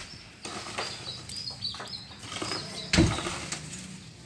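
A single heavy thud about three seconds in: an oil palm fruit bunch, lifted on a pole, landing on the load in a truck. Faint high bird chirps come before it.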